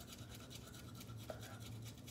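Faint toothbrush scrubbing teeth in quick, even back-and-forth strokes.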